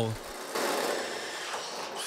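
Makita 18V cordless drill running steadily with a larger bit, enlarging a small pilot hole in a car's boot lid.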